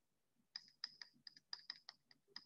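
Faint, quick, irregular clicks of a pen stylus tapping on a tablet surface while handwriting, starting about half a second in.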